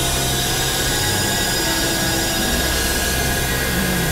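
Experimental synthesizer noise-drone music: a dense, steady wash of hiss with many held tones layered through it, the low notes changing every second or so.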